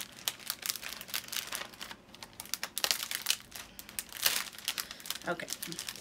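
Clear cellophane bag holding a folded shirt crinkling as it is handled, in a run of quick, irregular crackles.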